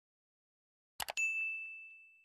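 A quick double mouse click about a second in, followed at once by a single bright bell ding that rings on and slowly fades. These are the sound effects of an animated subscribe button, with the ding for its notification bell.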